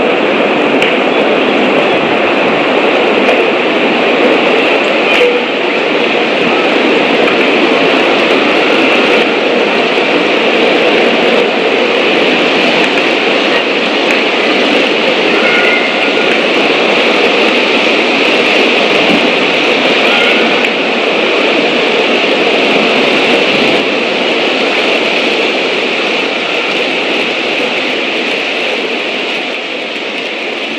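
A loud, steady rushing noise with no distinct events, easing a little in the last few seconds.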